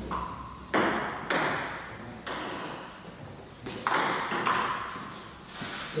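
Celluloid-type table tennis ball clicking off bats and the table in a rally, about six hits spaced irregularly from half a second to a second and a half apart, each with a short ring.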